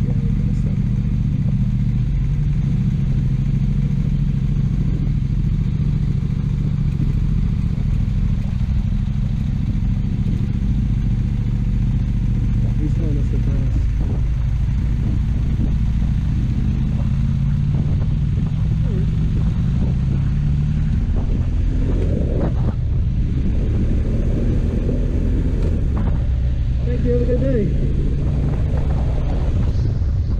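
Motorcycle engine running under way, its pitch rising steadily as it accelerates for several seconds midway, dropping with a shift about two-thirds of the way through, then climbing again.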